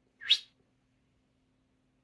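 A single short, high chirp-like squeak rising quickly in pitch about a quarter of a second in, followed by near silence with a faint steady hum.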